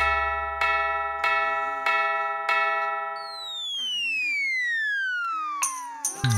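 Cartoon clock chime striking about six times, evenly spaced a little over half a second apart, each stroke ringing on; then a long whistle sliding steadily down in pitch.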